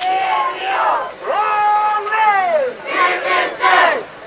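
A crowd of protest marchers shouting slogans together, in repeated long drawn-out calls with short breaks between them.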